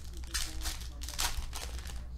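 Foil wrapper of a trading card pack crinkling and tearing as it is ripped open and the cards are pulled out, a run of short scratchy rustles.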